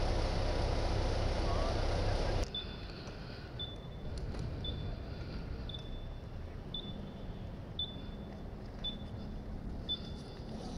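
Steady outdoor rumble that cuts off abruptly about two and a half seconds in, giving way to a short high electronic beep repeating about once a second over a quieter background.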